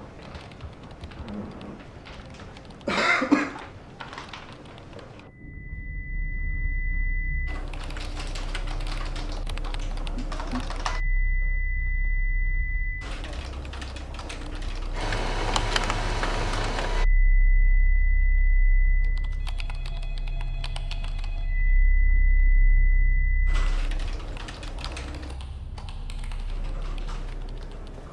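Office room sound with computer keyboard typing gives way after about five seconds to a deep low drone. Over the drone, a single steady high ringing tone comes and goes four times, with the rest of the sound muffled away while it rings: sound design rendering impaired hearing.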